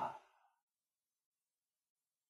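The last moment of a man's spoken word dying away about a fifth of a second in, followed by silence.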